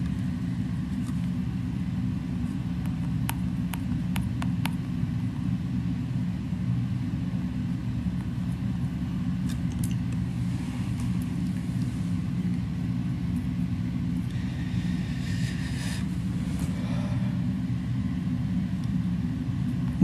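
Steady low background rumble that holds at one level throughout, with a few faint clicks about three to five seconds in.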